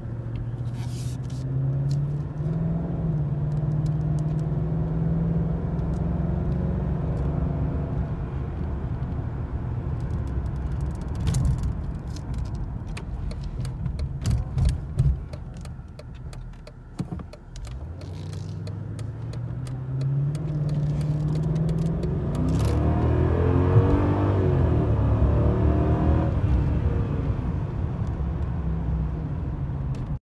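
2000 Mercedes-Benz CL500's 5.0-litre V8 heard from inside the cabin while driving: it pulls up in pitch near the start, drops to a low lull around the middle, then accelerates again twice in the second half, its pitch rising each time.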